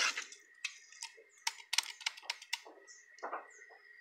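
Scattered light clicks and taps from a plastic container and spoon being handled, with a few faint bird chirps in the second half.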